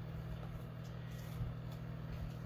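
Steady low hum of background room noise, with one faint soft tick about halfway through.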